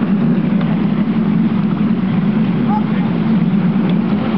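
Miniature railway train running along its track, a steady low rumble from the carriages and wheels.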